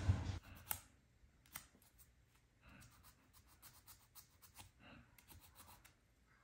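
Faint handling sounds of small nail tools: a few sharp clicks and taps in the first second and a half, light rustling, then a quick run of small clicks near the end. The nail drill is not running.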